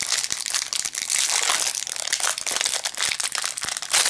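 Crinkly plastic wrapper of a trading-card pack being handled and pulled open, with continuous crackling and many small clicks.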